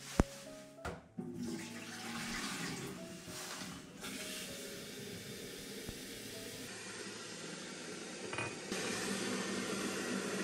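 A sharp click, then a kitchen tap running water into an electric kettle as it is rinsed out at the sink, the flow changing partway through.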